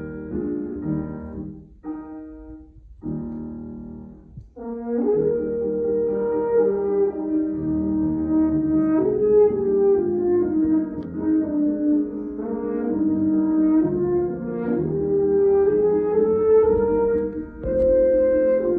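French horn and grand piano playing a classical piece. Short piano chords with gaps come first, then the horn enters about five seconds in with a smooth, sustained melody over the piano accompaniment.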